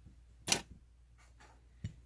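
Two brief clicks from tools being handled on a fly-tying bench: a sharp click about half a second in, then a softer knock with a low thud near the end.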